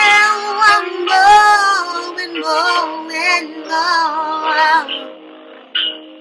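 A woman singing slow R&B vocal runs over a backing beat, her voice sliding and bending through long held notes. The voice drops away shortly before the end.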